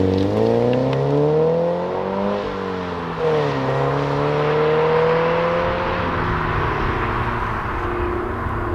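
Toyota GT86's flat-four boxer engine through a Milltek sport exhaust, accelerating away: the note climbs, drops at a gear change about three seconds in, climbs again, then levels off as the car draws away.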